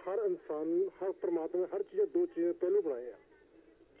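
A person talking over a telephone line on a call-in broadcast, the voice cut off above the usual phone range; the talk stops about three seconds in.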